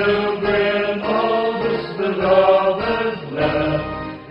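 Slow song sung to music, the voices moving through long held notes.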